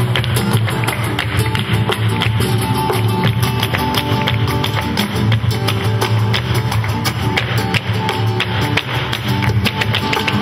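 Live flamenco tanguillo: a flamenco guitar plays under a steady rhythm of handclaps (palmas) and the dancer's shoe footwork striking the wooden stage.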